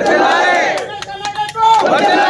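A crowd of men shouting in unison: two long, loud cries, one at the start and another near the end, with scattered sharp cracks among them.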